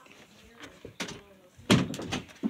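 Hands handling a Jetson Plasma hoverboard: a small click about a second in, then a louder thump near the end as the board is pressed and knocked.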